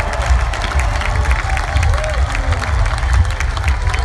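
Large festival crowd cheering and clapping, with a deep bass rumble from the stage sound system underneath.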